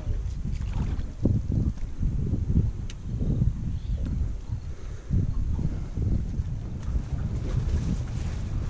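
Wind buffeting the microphone in low, uneven gusts, with one sharp click about three seconds in.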